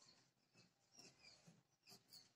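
Near silence, with faint short squeaks and light ticks of a marker writing on a whiteboard.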